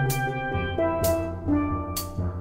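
Steel drum band playing: several steel pans ringing out sustained notes over a drum kit, with a sharp hit on the kit about once a second.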